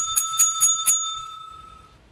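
Desk service bell pressed by hand five times in quick succession, about four dings a second, its ring fading out over the following second.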